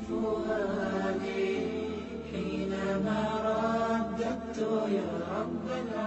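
Chanted vocal music: a voice singing a slow melody in long, sliding held notes over a low steady hum.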